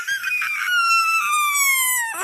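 A cartoon character's long, high-pitched scream that slowly falls in pitch.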